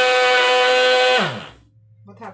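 Countertop blender motor running with a steady whine, then cut off about a second in, its pitch falling as the blades spin down to a stop.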